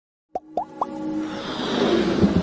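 Intro sound effects for an animated logo: three quick pops, each rising in pitch and about a quarter second apart, then a swell that builds up under music.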